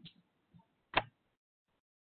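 A single sharp click about a second in, with a couple of faint ticks before it; then the sound cuts to dead silence.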